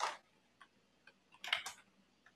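Faint computer mouse clicks: a few light single clicks, then a louder double click about one and a half seconds in, as the PowerPoint presentation is switched into slideshow mode.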